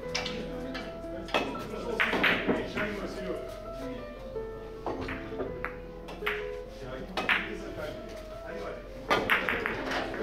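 Background music playing, with several sharp clacks of Russian billiard balls striking one another scattered through it, a quick cluster of them near the end.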